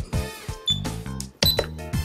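Short high electronic beeps from a JR XG14 radio transmitter's keys as its settings are entered, two of them about a second apart, over steady background music.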